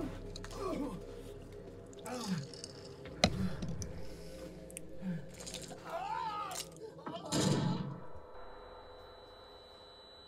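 Film soundtrack playing quietly: scattered voices, a sharp crack about three seconds in, and a louder burst around seven seconds. This gives way to a steady high-pitched ringing tone, the film's effect for ears ringing after a gun is fired next to someone's ear.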